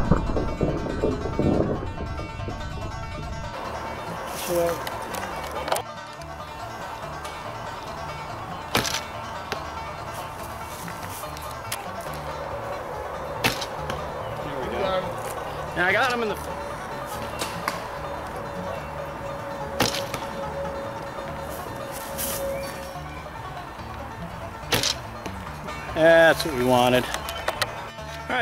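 Background music over a run of traditional bow shots: a heavy thump at the start, then several sharp knocks a few seconds apart from bowstring releases and arrows hitting foam targets. Brief voices come near the end.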